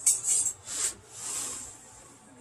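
A few short scratchy scrapes, the longest about a second in, as a clay sphere is turned against a marking scribe to score a horizontal line.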